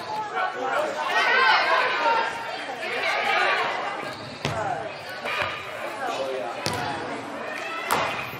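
Several voices calling out and talking over one another in a large indoor hall. Four sharp thuds of a soccer ball being struck come in the second half.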